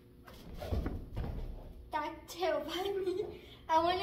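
Bare feet and hands landing on an inflatable air track during a back handspring over an air barrel: a few soft, low thuds in the first second and a half. From about two seconds in, a girl's voice takes over.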